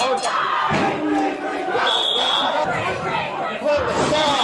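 Several people shouting at once in a crowd, with a building alarm sounding a high-pitched tone in pulses, one pulse about halfway through.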